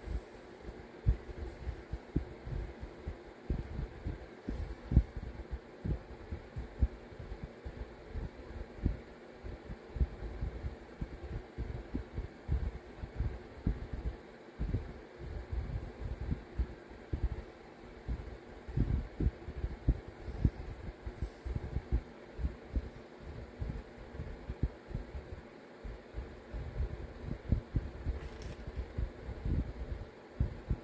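Dull, irregular low thumps, several a second, as a fine double-cut flame-shaped carbide burr is pressed again and again into a dome of modelling clay on a paper pad. A steady low hum runs underneath.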